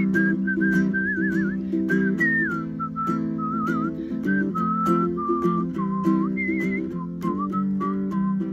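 A person whistling a melody with wavering trills, rising to a higher phrase about two-thirds of the way through, over steady strummed chords on an Aloha ukulele.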